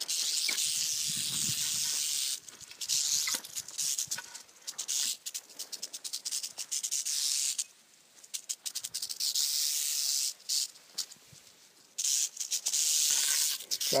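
Northern Pacific rattlesnake rattling its tail: a dry, high buzz in about five bouts of one to three seconds each that start and stop abruptly. It is the defensive warning of a disturbed rattlesnake.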